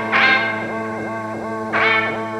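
Instrumental music: an effects-processed electric guitar playing a repeating figure that bends in pitch about three times a second, over a steady low drone.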